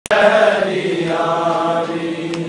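Men's voices chanting a Punjabi nauha, a Shia lament, in a slow drawn-out style, holding long steady notes.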